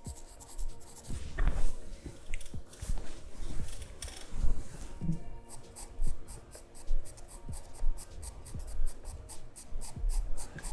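Sharp charcoal pencil scratching on drawing paper in short shading strokes, which become quicker and more even about halfway through.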